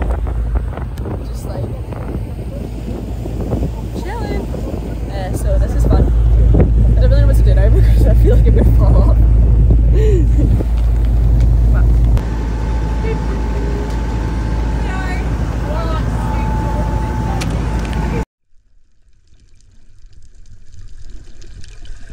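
Wind buffeting the phone's microphone over the steady rumble of a motorboat under way, with indistinct voices. About twelve seconds in it gives way to a steadier engine hum, which cuts off suddenly about eighteen seconds in.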